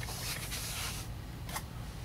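Plastic handling noise: a soft rustling scrape for about a second as a plastic magnifier headset is lifted out of a cardboard box with a clear plastic tray, then a single light click.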